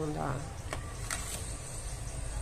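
A short spoken word, then three light clicks of ribbon and headband being handled about a second in, over a steady low hum.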